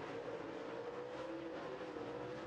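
Dirt-track super late model race cars running at speed: a steady, fairly faint engine drone whose pitch rises slightly and then falls away.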